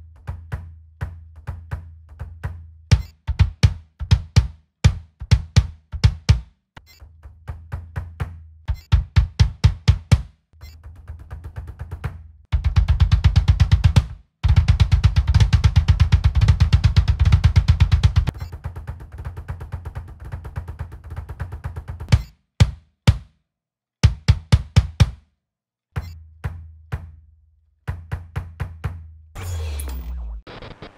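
Kick drum played with a double bass-drum pedal: groups of quick strokes and, in the middle, several seconds of fast continuous double-kick rolls. It is heard with an Evans dB One single-ply mesh batter head, which cuts the kick's volume by about 80%, and with a full-volume Evans UV EMAD batter head.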